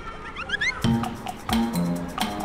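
Edited-in sound effect: a quick run of rising, whistle-like chirps. About a second in, an upbeat background music track with a steady beat takes over.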